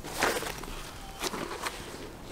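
A canvas bag being handled and opened: fabric rustling about a quarter second in, then a couple of short scrapes.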